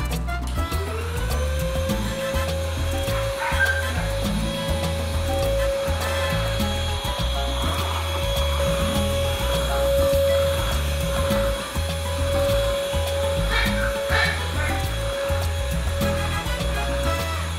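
Stick vacuum cleaner switched on, its motor spinning up to a steady whine about half a second in, with background music and a steady beat.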